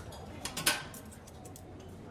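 A metal table knife set down on a tabletop: a short metallic clatter a little over half a second in, with a brief ring.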